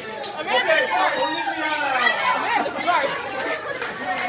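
Several people talking over one another in lively chatter, with voices overlapping throughout.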